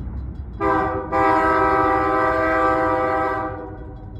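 Diesel locomotive air horn sounding a chord of several notes: one short blast, then a long blast of over two seconds that fades away. A low locomotive rumble runs underneath.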